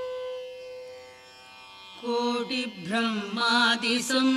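Carnatic-style devotional music: a long held note fades away over the first two seconds, then a voice starts singing the hymn with sliding, ornamented pitch about two seconds in.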